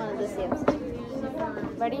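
Girls' voices talking and chattering in a room, with one sharp click about two-thirds of a second in.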